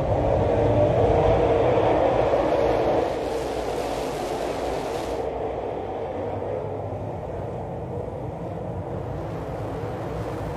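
A full field of dirt late model race cars running together at racing speed, many V8 engines blending into one dense, continuous sound. It is loudest in the first three seconds, then drops somewhat as the pack moves on.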